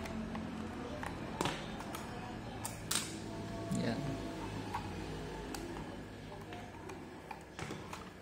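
A few scattered sharp clicks and knocks from the plastic case of a digital multimeter and a screwdriver being handled while the meter is taken apart, over a low steady hum.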